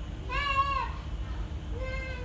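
Two drawn-out high-pitched vocal calls, each rising and then falling in pitch; the second begins near the end.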